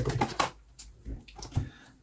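Deck of tarot cards being handled and squared up: a few light clicks and taps of card on card, most of them in the first half-second, fainter ones later.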